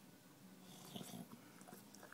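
English bulldog breathing noisily through its nose while it noses and licks a plastic bottle cap. The sound is faint, with a louder breath about a second in and a few soft clicks near the end.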